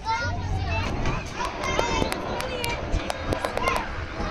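Children playing: several high young voices calling and shouting over one another, with scattered short sharp clicks.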